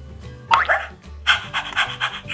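A toy puppy's short bark about half a second in, then quick panting, over light background music.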